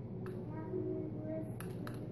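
Small sharp clicks of a small plastic connector and its metal pins being handled: one about a quarter second in, then two close together near the end.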